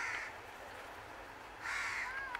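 A crow cawing twice: one harsh caw at the start and another near the end.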